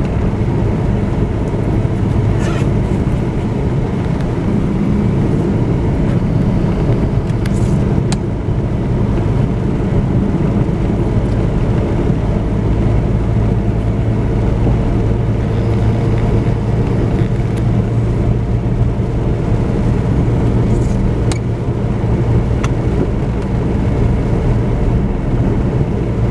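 Steady road and engine noise inside the cabin of a moving vehicle: an even low hum, with a few faint clicks.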